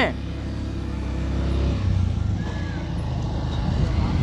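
Motorcycle engine running at low speed, a steady low rumble with no change in pitch.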